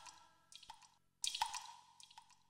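Faint water-drip sounds at the very end of a song's outro: a few short plinks, each ringing briefly at one pitch, about half a second in and again around one and a half seconds, as the music dies away.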